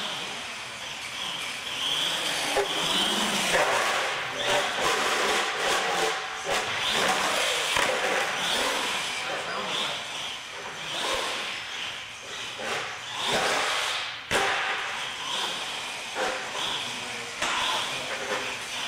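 Radio-controlled monster truck driving on a hard floor: a rushing noise of motor and tyres that surges and fades as it accelerates and turns, with a few sharp knocks, over background voices.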